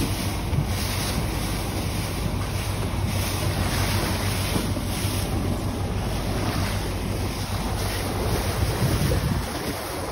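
Wind buffeting the microphone over water rushing along the hull of a moving boat, a steady noise with a low hum beneath it.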